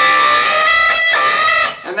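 Overdriven electric guitar playing a double-stop bend twice, the B string pushed up toward the pitch of the note held on the high E string, giving a dirty, clashing sound. The notes ring for about a second each and stop shortly before the end.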